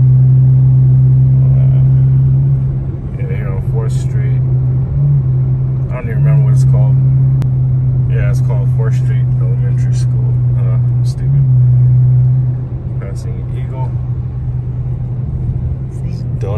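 A car driving in traffic, heard from inside the cabin: a steady low drone from the engine and road that shifts slightly in pitch a few times and eases a little near the end. Faint talk comes and goes over it.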